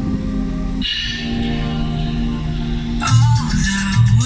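Background song: held chords that grow fuller about a second in, then a steady pulsing low beat and a melody line come in about three seconds in.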